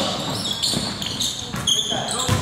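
A basketball bouncing on a hardwood gym floor, in irregular knocks, with voices in the background.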